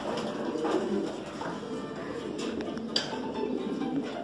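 Many racing pigeons cooing together in a loft, their coos overlapping into a dense, continuous chorus. A single sharp click sounds about three seconds in.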